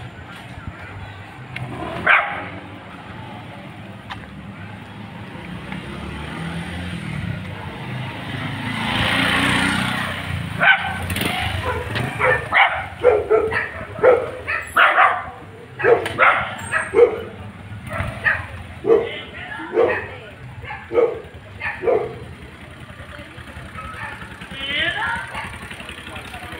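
A dog barking over and over, about once a second, for some ten seconds in the middle. Just before the barking, a motorbike passes with a sound that swells and fades.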